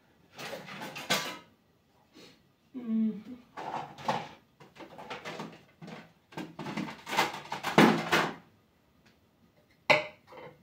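A serving spoon scraping and knocking against a cooking pot as food is dished out, in several bursts, with a sharp clink just before the end. A voice murmurs briefly in between.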